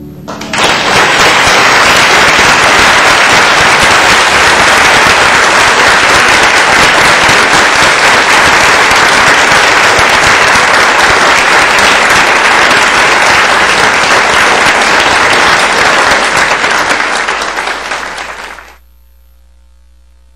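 Audience applauding loudly right after a live harp piece ends, starting about half a second in, holding steady, then dying down and cutting off shortly before the end.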